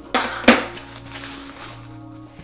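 Two sharp knocks close together near the start, the second louder, as a metal-tipped audio cable is set down on a wooden tabletop, with soft background music holding a steady note underneath.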